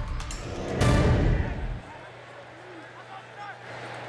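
Sports-broadcast transition sting: loud music with whoosh and impact hits, a second hit about a second in, dropping off just under two seconds in. After it comes quieter live game sound with faint voices and a steady low hum.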